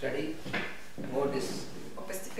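A person speaking.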